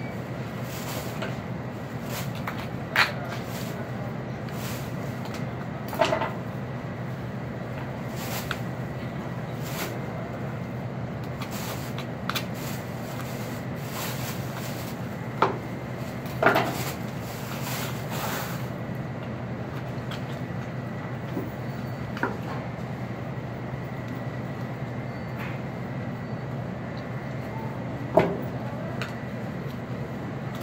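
Butcher's knife knocking against bone and the cutting counter while boning out a backbone with ribs: a few separate sharp knocks, spread out, over a steady low hum.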